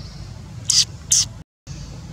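Two short, loud hisses about half a second apart over a steady low rumble, followed by a brief dropout to silence.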